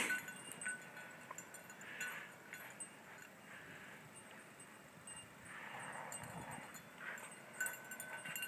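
Faint, mostly quiet sound with a light metallic jingle, as of dog collar tags, while two dogs bound through deep snow; the jingle comes back louder near the end as the dogs return.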